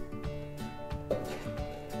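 Background music: held melodic notes over a steady percussive beat.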